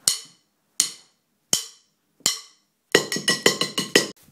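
Percussion track of a song being recorded: four evenly spaced count-in clicks about three-quarters of a second apart, then a quick run of rapid hits near the end.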